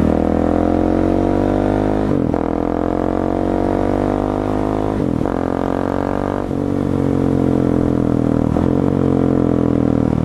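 A Husqvarna 701 Supermoto's single-cylinder engine accelerating on the road, its revs climbing steadily with short breaks for gear changes about two and five seconds in. This is the engine under hard, varied load of a new-engine break-in meant to seat the piston rings.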